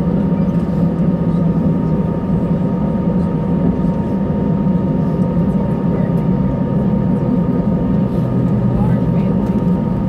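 Inside an Airbus A319 cabin while taxiing: its twin jet engines at idle give a steady low hum with a thin steady high tone over it.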